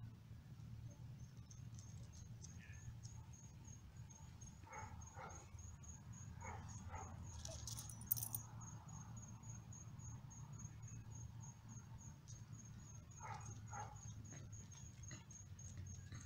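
A cricket chirping steadily, a high pulse repeating several times a second, over a low steady rumble. A few soft clicks come and go, and a brief scuff just past the middle is the loudest sound.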